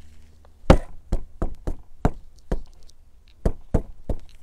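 A series of sharp knocks, about eight in three seconds at an uneven pace, the first the loudest.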